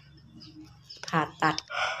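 A rooster begins to crow near the end, after a low, quiet first second, mixed with a woman's speaking voice.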